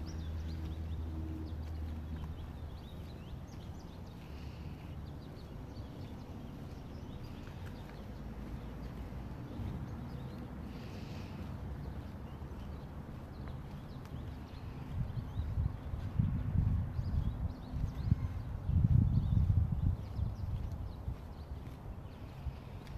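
Outdoor street ambience while walking on a sidewalk: faint footsteps, a steady low hum for the first couple of seconds, and low rumbling bursts in the last third, the loudest sound.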